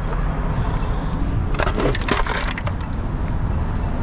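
Broken glass and crash debris crunching underfoot: a cluster of sharp crackles and clicks lasting about a second, starting about one and a half seconds in, over a steady low rumble.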